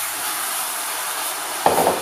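Beef stock sizzling and hissing steadily in a hot cast iron casserole, just poured in to deglaze the seared meat. A short, louder sound comes near the end.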